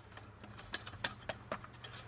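A knife clicking and scraping lightly against an aluminium beer can as peanut butter bait is dabbed onto it, the can shifting on its wire: a dozen or so small, irregular clicks.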